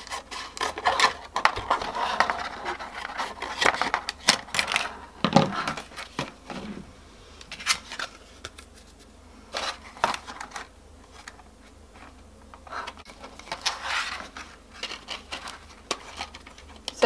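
Scissors snipping through the thin plastic of a milk bottle, with irregular crackles and rustles as the plastic is handled and bent. Near the end, masking tape is pulled and pressed onto the plastic.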